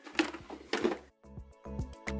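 Rustling and light clicks of plastic packets being handled in a drawer. About a second in, this gives way to background music with a steady beat.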